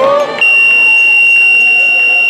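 Electronic match-timer buzzer sounding one long, steady, high-pitched tone that starts about half a second in, signalling the end of the match.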